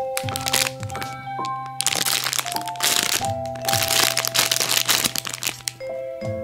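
Clear plastic packaging crinkling and crackling in bursts as a wrapped squishy toy is handled, over steady background music.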